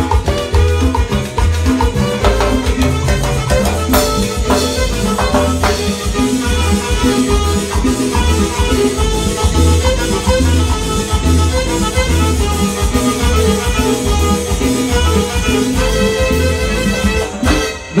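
Live band playing an instrumental Latin dance tune, with drums, timbales, cymbal and electronic keyboard over a steady beat. The music dips briefly just before the end.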